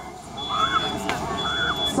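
Smoke alarm beeping in a high, steady tone, two beeps of about half a second each with a short gap between them, set off by smoke from the growing room fire.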